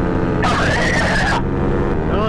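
A paramotor's engine and propeller drone steadily in flight, with a brief rising-and-falling cry about half a second in.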